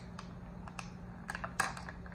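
Plastic sticker sheets and cards being handled on a craft table: a run of light clicks, taps and rustles, the sharpest about one and a half seconds in.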